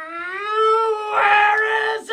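A man's long, drawn-out scream of rage. It rises in pitch at the start and is then held, with a short dip about a second in.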